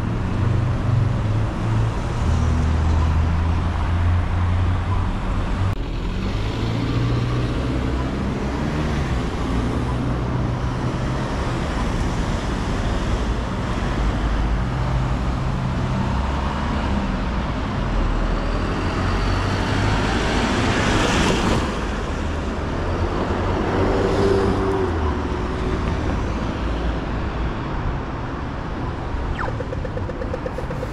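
Road traffic on a city street: a steady hum of car engines and tyres, with one vehicle passing close about two-thirds of the way through.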